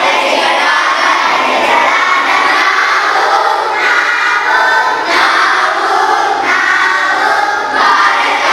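A large group of children singing together in chorus, in phrases that break off briefly every second or so.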